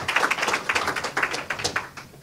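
A small audience applauding with many separate claps, which thin out and stop near the end.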